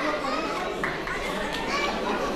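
Hall full of people chattering, with children's voices among them.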